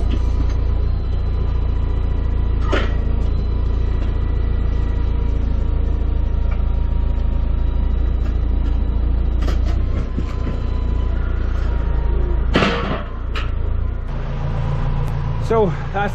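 Tractor engine running steadily, a low rumble with a faint whine, broken by a few sharp knocks and clatters.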